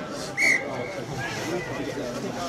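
Rugby referee's whistle: one short blast about half a second in, stopping play at the scrum, over players' voices in the background.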